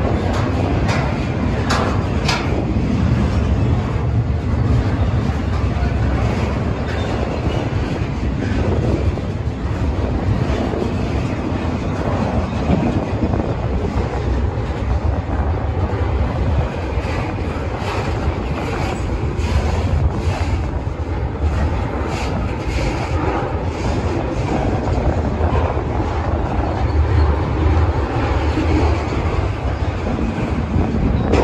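Loaded freight flatcars rolling past at close range: a steady, loud low rumble of steel wheels on rail, with scattered clicks and knocks as the wheels run over rail joints.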